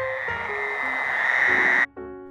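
A steady, high-pitched chorus of Fowler's toads and gray tree frogs giving their breeding calls from a pond, swelling slightly and cutting off suddenly near the end. A few soft guitar notes of background music sound under it.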